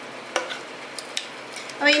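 An orange spatula scraping a thick milk mixture from a steel pan into a steel mixer jar, with a few sharp clicks as spatula and pan knock against the metal rims, the loudest about a third of a second in. A voice starts right at the end.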